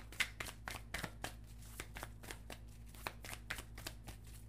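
Tarot deck being shuffled by hand to draw a card: a run of soft, irregular card-shuffling clicks that thin out toward the end.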